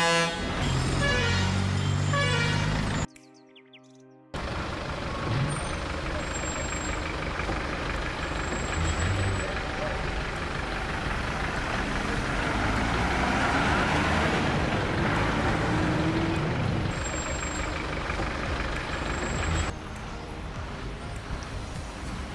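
A bus horn sounds loudly for about three seconds in shifting notes. After a short break, a bus engine labours round a hairpin bend, growing louder as the bus nears and dropping away near the end.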